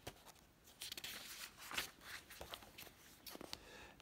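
Faint rustling and soft clicks of a book's paper page being handled and turned, busiest about a second in.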